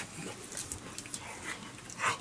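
Faint huffing breaths and mouth noises from a man chewing a mouthful of hot steamed pork bun, with a light rustle of plastic wrap.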